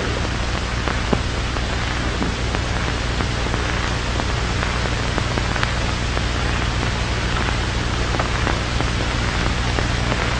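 Steady hiss and crackle of an old film soundtrack over a low steady hum, with a few faint clicks.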